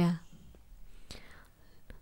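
A voice finishes a word, then a quiet pause in which the speaker takes a faint breath, with a small mouth click near the end.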